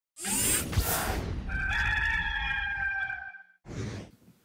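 A rooster crow sound effect in the Gamecocks' logo sting: one long, held crow, led in by a rushing whoosh with a sharp hit in the first second. A second short whoosh comes near the end.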